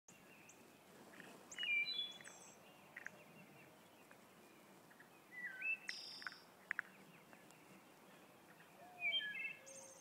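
Birds chirping in three short bursts of whistled notes, over a faint steady background, with a few faint clicks between.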